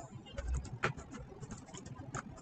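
Irregular clicks of a computer mouse and keyboard keys as text is copied and pasted between windows, with a low thump about half a second in and a sharper, louder click just before one second in.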